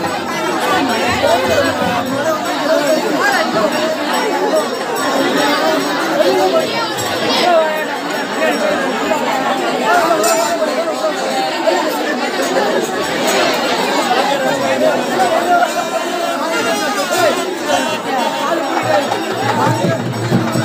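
A large, tightly packed crowd chattering, many voices overlapping continuously, with music underneath.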